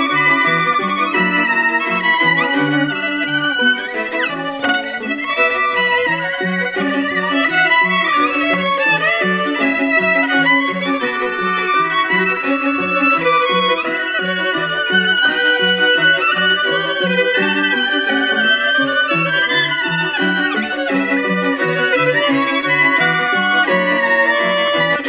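Instrumental music led by a violin playing a wavering melody over a steady, repeating pattern of low notes.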